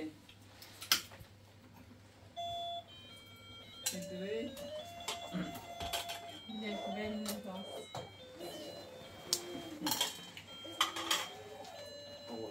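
A simple electronic tune of flat, stepped beeping notes, like a toy's or a phone's melody, starting about two seconds in. Low voices and a few sharp clicks sound under it in a small room.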